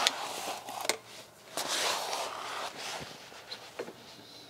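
Rustling and scraping of a person shifting on a cardboard sheet on the floor, with a few light knocks.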